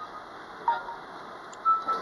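Two short electronic beeps from a GPS navigation unit, a brief falling blip about a third of the way in and a short steady tone near the end, over the steady hum of the car interior.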